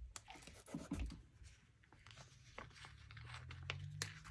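Faint crackle and rustle of a paper sticker sheet being handled and stickers peeled off it, mostly in the first second, then a few small ticks.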